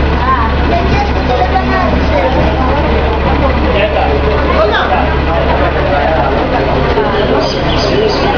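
Articulated city bus idling at a station platform, a steady low engine hum under the chatter of passengers; the hum drops away near the end.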